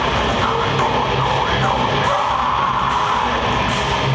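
A death metal band playing live: distorted electric guitar and bass over drums, in a dense and steady wall of sound, heard from within the audience.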